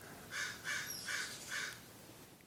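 A bird calling faintly, four short calls about half a second apart.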